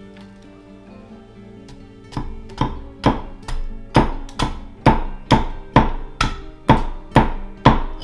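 Carving axe chopping into a green-wood spoon blank resting on a log chopping block: a steady rhythm of about two strikes a second, starting about two seconds in. Background music plays throughout.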